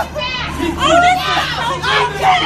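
Raised, high-pitched voices shouting over one another in a tense street confrontation, with no clear words, over a steady low hum.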